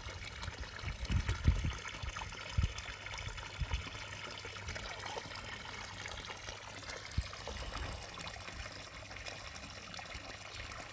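Water trickling steadily into a garden pond, with a few short low bumps, mostly in the first four seconds.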